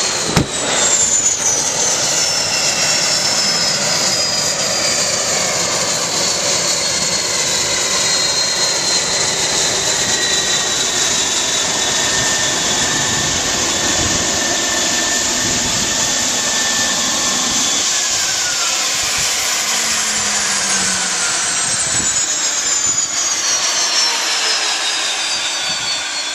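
Air Tractor crop duster's turboprop engine whining, its pitch falling slowly as the turbine winds down. A brief thump comes just after the start.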